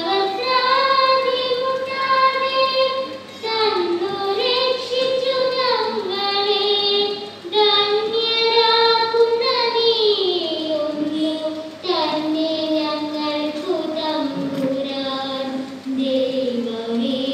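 Young voices singing a slow melody in a large hall, holding long notes that slide from one pitch to the next, with short breaks about every two to four seconds.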